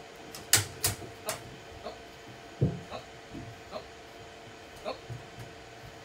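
A dog's footsteps on an aluminum jonboat: a few sharp clicks of claws in the first second and a half, a dull thump of a paw on the hull a little after that, then scattered lighter taps as she moves about the boat.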